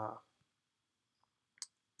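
Mostly quiet, with one short, sharp click about a second and a half in: a computer mouse click.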